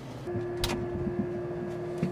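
A steady, even electrical hum at a fixed pitch sets in a quarter of a second in, with one sharp click just after it starts.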